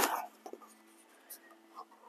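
Faint paper rustling and a few small, scattered ticks as a paper sticker sheet is handled and a sticker is peeled off by hand.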